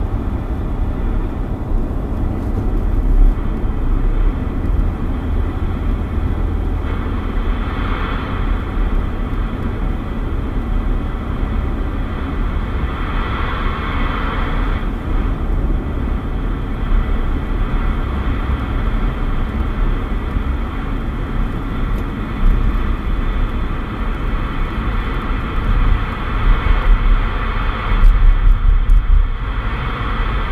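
Road and engine noise inside a moving car's cabin: a steady low rumble with a constant hiss above it, swelling briefly about eight seconds in and again around fourteen seconds.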